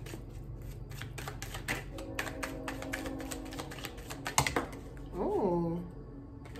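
Tarot cards being shuffled by hand: a rapid run of small clicks and slaps as the cards are cut and slid together, with one sharper snap about four seconds in.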